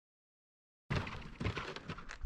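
Silence for the first second, then outdoor sound cuts in abruptly: an uneven low rumble with scattered clicks and knocks.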